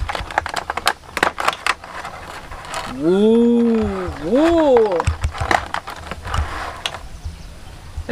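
Stiff plastic packaging tray crackling and clicking as it is handled and a toy snake is pulled out of it. In the middle, a voice makes a wordless two-part sound, rising and falling twice, before the crackling starts again.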